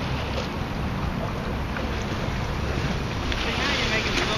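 Wind buffeting the microphone over water lapping against shoreline rocks; from about three seconds in, the water grows louder as a wave washes in over the rocks.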